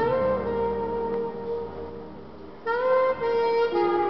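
Slow instrumental music on saxophone and French horn: long held notes, a brief lull a little past halfway, then the next phrase coming in with a short upward slide.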